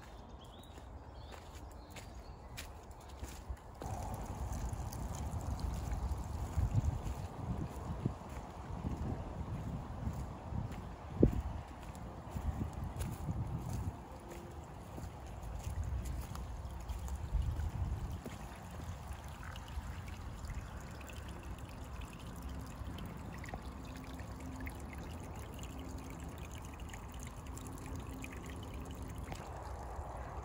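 A small woodland stream trickling, with footsteps on a muddy path. From about four seconds in, a low, uneven rumble on the microphone, strongest until about eighteen seconds.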